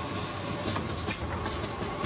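FB650A automatic book-style box assembling machine running: a steady mechanical clatter from its conveyor and drive, with a run of short light clicks in the second half.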